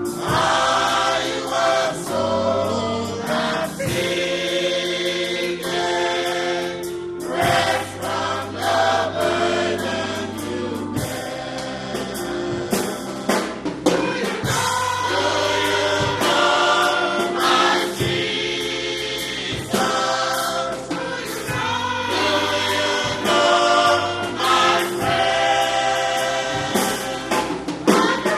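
A choir singing gospel music with instrumental backing, in long held chords that change every second or two.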